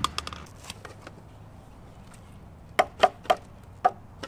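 Sections of a telescoping fiberglass mast clacking together as it is collapsed. There are a few light clicks near the start, then four sharp, hollow knocks in the last second and a half.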